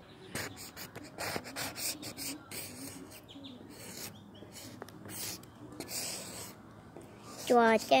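Felt-tip marker scribbling on a weathered wooden fence board: a run of short, irregular scratchy strokes as the tip rubs over the rough grain. A child's voice starts near the end.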